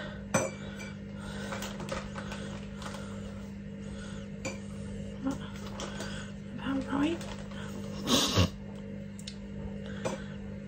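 Spoon and measuring cup clinking and scraping while heaped spoonfuls of brown sugar are scooped and tipped into a cooking pot: soft, scattered clinks with a louder scrape about eight seconds in. A steady low hum runs underneath.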